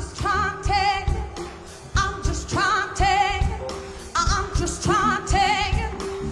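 Live female soul vocal with a band: a wordless phrase sung three times with wide vibrato, about two seconds apart, over drums and bass guitar.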